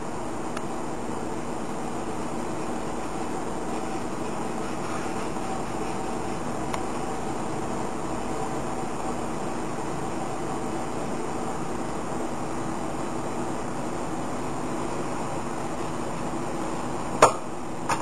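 Steady background machine hum holding several faint steady tones at an even level, with one sharp click just before the end.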